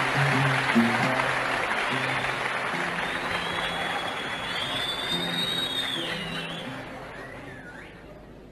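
Live oud music, single plucked notes in the low register, over a broad wash of crowd noise. A thin high whistle sounds in the middle, then everything fades down toward the end.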